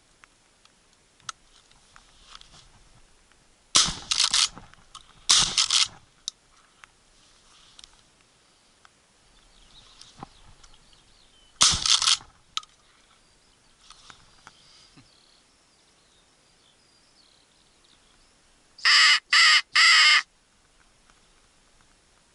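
Winchester SXP pump-action shotgun fired three times: two shots about a second and a half apart a few seconds in, and a third around the middle. Near the end come three loud caws in quick succession.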